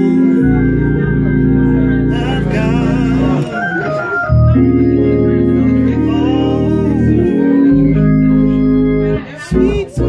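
Traditional gospel playing on an electric drawbar organ: full held chords over a sustained bass, the chords changing every few seconds, then breaking into short detached chords near the end.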